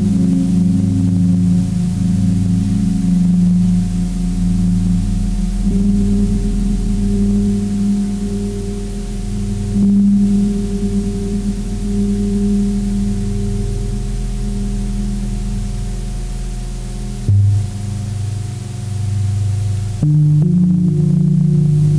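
Electronic drone music: layered, long-held low tones with a gong-like ring, which shift in pitch about six seconds in and again near the end.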